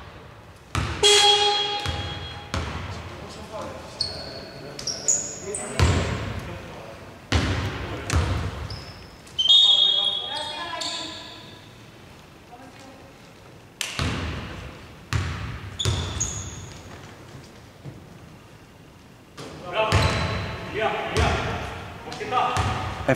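A basketball bouncing now and then and sneakers squeaking on a hardwood court, each impact echoing through a large, mostly empty sports hall.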